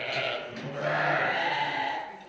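Dorper sheep bleating: a short bleat at the start, then a longer, louder bleat of about a second.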